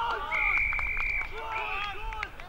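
An umpire's whistle blown in one steady, high blast of about a second, with men shouting on the field around it.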